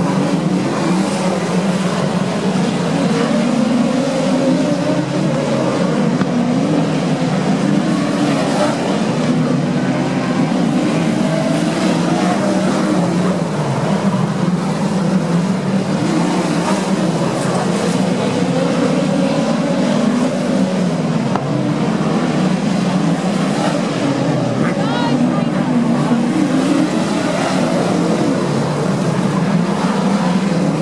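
Engines of a pack of dirt-track midget race cars running together as the field circles the track: a loud, steady, continuous engine sound with no sudden breaks.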